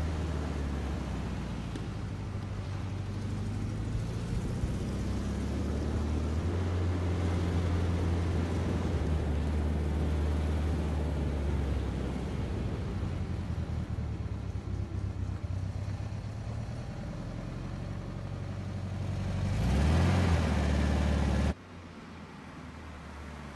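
Car engine running as the car drives through city streets, its pitch shifting up and down. Near the end it swells to a louder surge, then cuts off abruptly.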